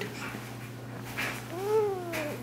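Baby on tummy time letting out one drawn-out fussy vocal sound that slides down in pitch, starting about one and a half seconds in.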